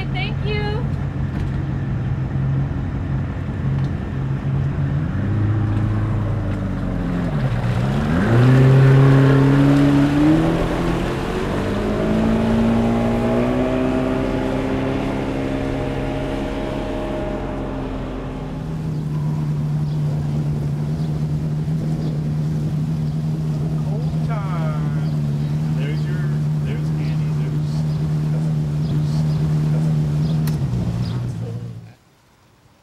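Boat outboard motor running at low speed, then throttled up about seven seconds in: its pitch dips, then climbs steadily as the boat gets under way. After about eighteen seconds it holds a steady, higher cruising pitch.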